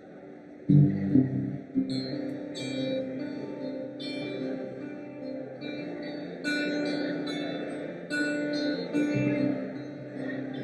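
Acoustic and electric guitars playing an instrumental passage: a loud strummed chord about a second in, then chords held under single picked notes.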